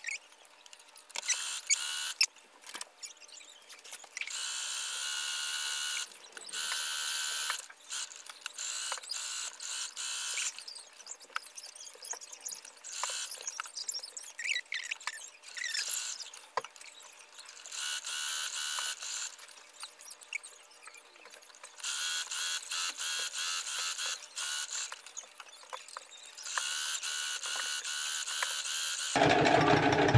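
Electric sewing machine stitching in short runs of one to four seconds, stopping and starting repeatedly as the channel lines of a quilted puffer panel are sewn through its layers. Scattered clicks and fabric handling fall in the pauses.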